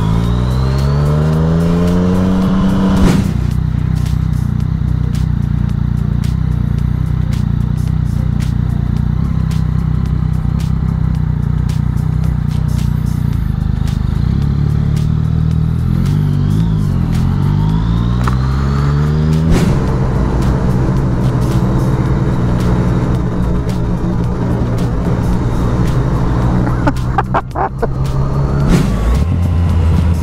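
Yamaha MT-09 Tracer's three-cylinder engine pulling hard, its pitch rising steeply over the first three seconds and again from about sixteen seconds in, then holding steady, with background music underneath.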